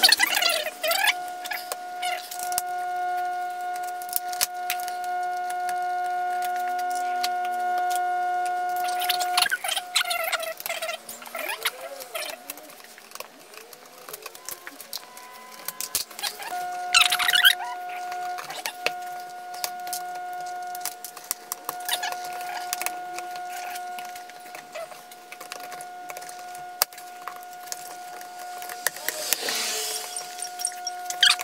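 Clicks, snaps and rattles of the plastic clips and grille panels of a Jeep JL's removed front grill being pried and handled. Behind them a steady pitched hum runs for long stretches, stops a little before the middle and comes back.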